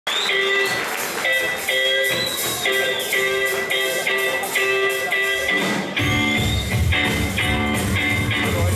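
Live band of guitars, upright double bass and drums playing an up-tempo song. Guitar plays the intro alone, and bass and drums come in about six seconds in.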